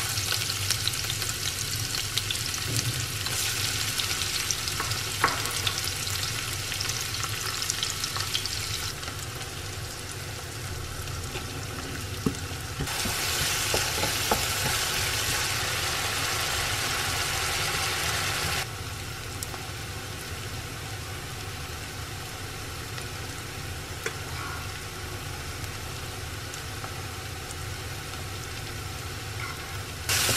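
Chopped onion frying in hot oil in a non-stick wok, sizzling steadily with a few light knocks. The sizzle is louder for the first third and again for a few seconds in the middle, with sudden steps in level, and a steady low hum sits underneath.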